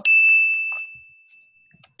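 A bell struck once with a bright ding that rings out and fades over about a second and a half. It is the game's ding marking a point awarded for a correct answer.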